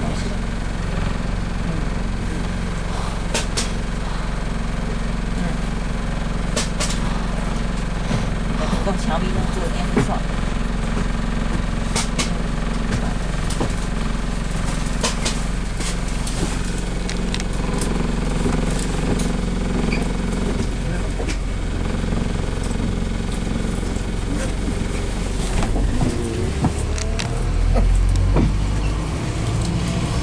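Double-decker bus engine idling steadily while the bus stands, heard from inside on the upper deck, with occasional clicks and rattles. About four seconds before the end the engine note rises and grows louder as the bus pulls away.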